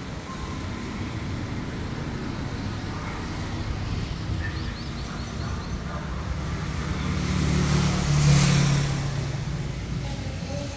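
Road traffic: a motor vehicle passes, its engine and tyre sound swelling to a peak a little past eight seconds and then fading, over a steady low rumble of traffic.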